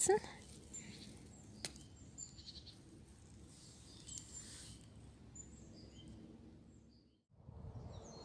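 Faint songbirds chirping in the background, short high chirps scattered through the quiet, with a single sharp click about one and a half seconds in. The sound briefly cuts out near the end.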